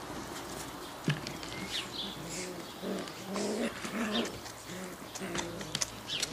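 Dogs at play, a Shetland sheepdog with young Malinois puppies: scattered short, high squeaky yips and whines, with a few lower calls in the middle.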